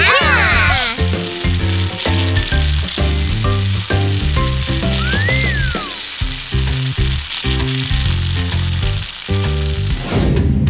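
Steady hiss of air rushing out of balloons that drive little toy planes along, over cartoon background music. A warbling squeal at the start, and a short whistle that rises then falls about halfway through.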